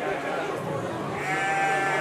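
A sheep giving one long bleat in the second half, over the chatter of a crowd in a large hall.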